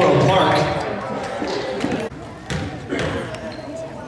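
Voices in a gym, loud at first and fading within the first second. Then a basketball bounces a few separate times on the hardwood court.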